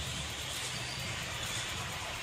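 Steady arena background sound of a basketball game broadcast: a low, even murmur of court and crowd noise with no distinct ball bounces or shoe squeaks.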